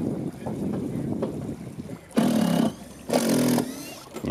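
Cordless drill driving a screw into a wooden deck in two short bursts, about two and three seconds in, over a low background of river water and wind.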